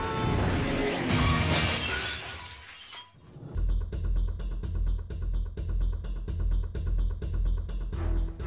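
A shattering-glass sound effect that fades out over about three seconds. Then music starts with a fast, steady beat and heavy bass pulses.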